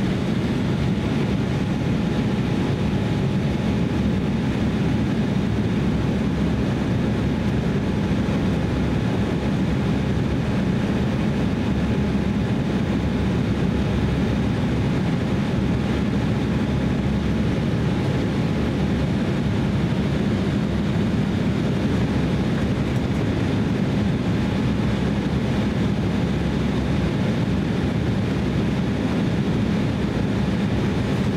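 Steady cabin noise of an Embraer E170 airliner on descent: the low rumble of its twin GE CF34 turbofan engines and the air rushing past the fuselage, with a faint steady whine above it.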